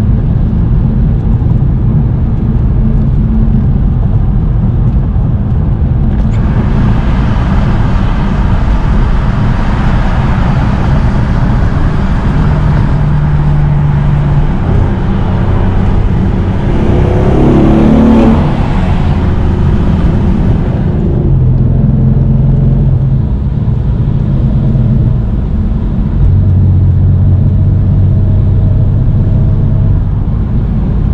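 BMW M4 Competition's twin-turbo straight-six heard from inside the cabin while driving at motorway speed, a steady low drone. From about six seconds to about twenty-one seconds a loud rush of wind and road noise joins it, with a brief swell near eighteen seconds, the loudest point.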